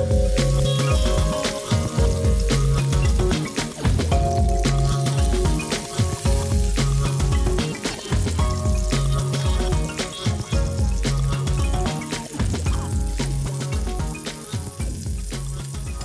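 Chicken breast sizzling as it fries in oil in a frying pan, under background music with a bass figure repeating about once a second.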